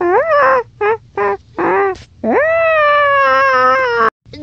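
A person's voice making high-pitched wordless cries: a quick run of short yelps, then from about two seconds in one long held cry that swoops up at the start and wavers near the end.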